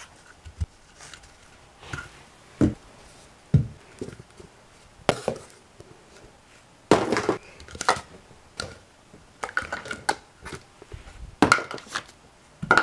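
Empty plastic Diet Coke bottles picked up by hand and gathered into a plastic bag: a run of irregular hollow knocks and clatters as the bottles hit each other and the bag, some louder than others.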